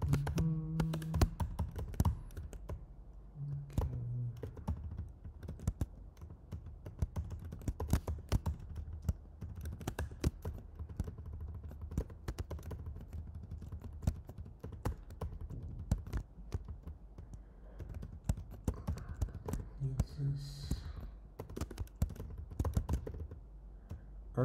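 Typing on a computer keyboard: a rapid, irregular run of key clicks throughout. Brief low murmurs of a man's voice come in near the start, about 4 s in and about 20 s in.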